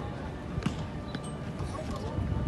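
A football being juggled with the feet: a few short kicks on the ball, about half a second apart.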